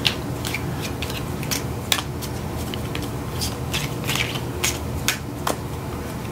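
A deck of tarot cards with thin, flexible laminated cardstock being shuffled gently by hand, the cards clicking and slapping irregularly about three times a second.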